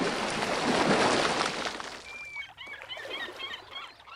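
Logo sting: a rushing whoosh of noise that fades out about halfway through, followed by a run of short bird chirps.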